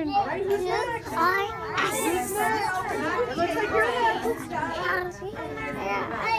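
Crowd of young children and adults talking over one another in a busy room, with children's chatter and calls.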